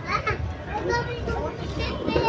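Background voices of people nearby, children's voices among them, in short bursts of talk and calling, over a steady low rumble.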